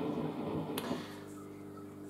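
Faint steady electrical hum in a quiet room, with one light click near the middle.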